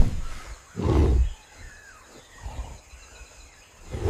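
Deep grunts from a gorilla, the loudest about a second in, then weaker ones later, over faint forest ambience with insects.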